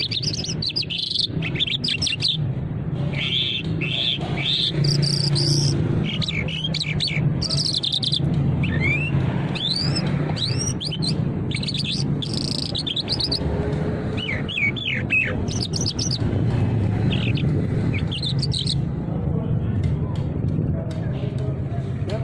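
A caged songbird sold as an Irani Mashhadi jal singing a varied song of quick chirps, trills and short downward-sliding whistles, falling silent a few seconds before the end. A steady low hum of background noise runs underneath.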